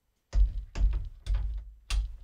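Short burst of music with a heavy drum-machine beat, about two beats a second, starting just after a dead-silent moment.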